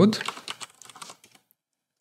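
Computer keyboard typing: a quick run of keystrokes entering a search term, stopping about a second and a half in.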